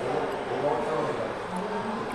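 Faint voices talking in the background, with no clear sound from the drinking itself.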